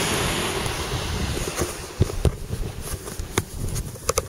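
Wind rushing over the microphone, easing about halfway through, followed by several sharp knocks and clicks from handling.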